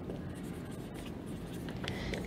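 Marker pen writing on a whiteboard: faint strokes of the felt tip rubbing across the board as a short phrase is written.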